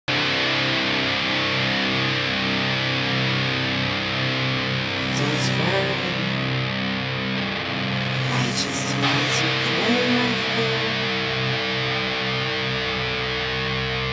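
Heavy metal music: two tracks of distorted electric guitar, a Dean guitar with EMG 81 and 60 pickups through Mesa Boogie Dual Rectifier and Engl amp simulations, playing held chords over the band's backing stems. A few sharp high accents come about five seconds in and again around eight to nine seconds in.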